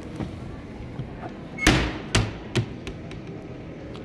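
A handful of sharp knocks and thumps, the loudest about one and a half seconds in and two more within the next second, as the won balls are handled out of the claw machine's prize chute, over a steady background hum.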